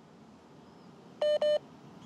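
Two short, identical electronic beeps in quick succession a little over a second in, each a steady tone, over faint room tone.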